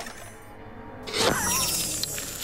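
Cartoon sound effect of toy chess pieces crashing down: a sudden shattering clatter about a second in, over background music.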